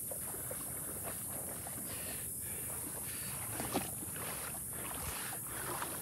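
Shallow water sloshing softly around someone wading, with a few faint splashes.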